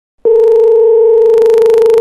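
Telephone ringback tone on the line: one steady, mid-pitched tone that starts a moment in and lasts nearly two seconds, cutting off suddenly as the call is picked up.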